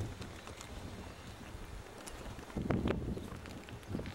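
Low wind rumble on the camcorder microphone, with faint handling clicks and a short louder low sound about two-thirds of the way through.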